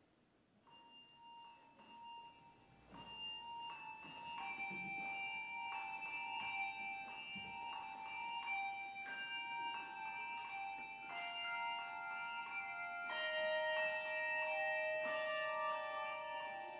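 Handbell choir ringing: single bell notes enter about half a second in, then more notes pile on and ring on over each other in slow chords, growing louder over the first few seconds.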